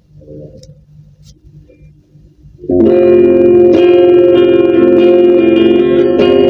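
LTD AX-50 electric guitar played clean through a Quake GA-30R amp, with the Blues Driver pedal not in the signal: after a faint low hum, a chord is strummed a little under three seconds in and left ringing, then struck again about a second later.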